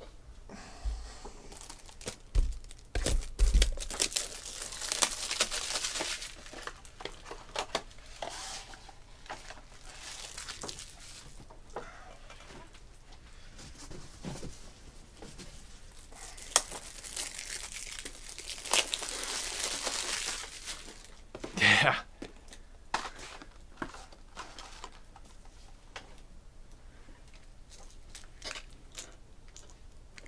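Plastic wrapping torn and crinkled off sealed trading-card boxes, in two long stretches of crackling, with scattered clicks and knocks as the boxes and cards are handled.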